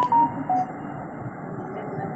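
Three short electronic beeps stepping down in pitch in the first second, the tail of a little beep tune, heard over the steady hiss and faint background voices of a muffled online-call audio line.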